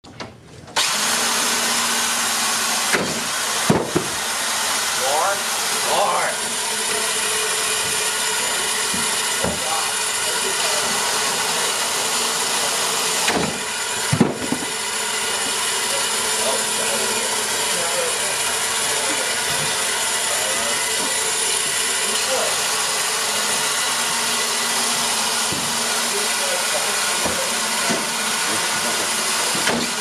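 The electric motors and wheels of a wheeled cube-shooter prototype start about a second in and then run steadily with a loud even whir. A few sharp knocks come through early on and around the middle.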